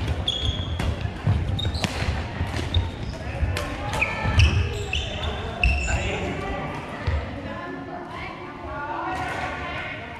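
Badminton rally in a gym: rackets hitting the shuttlecock, sneakers squeaking briefly on the hardwood court, and feet thudding on the floor, echoing in the large hall. The action thins out near the end.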